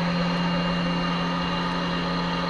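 A steady machine hum: one low, even drone with a fainter higher whine above it, unchanging throughout.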